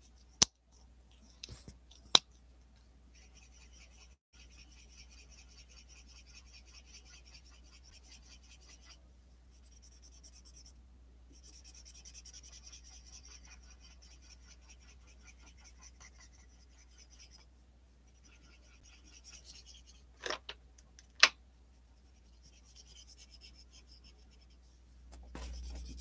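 A black felt-tip marker being scrubbed back and forth across paper in faint, dry scratching strokes that come and go. The marker is running out of ink because the paper soaks it up. A few sharp clicks stand out, two near the start and two more near the end.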